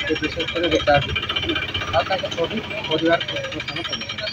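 A man talking, over a steady high-pitched buzzing in the background.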